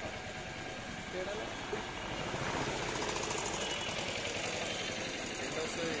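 An engine running steadily with a fast, even pulse, with faint voices in the background.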